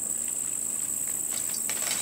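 Steady high-pitched chorus of field insects, with faint rustling of weed stems being handled in the second half.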